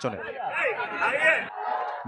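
Several voices talking over one another, a babble of chatter that thins out about one and a half seconds in.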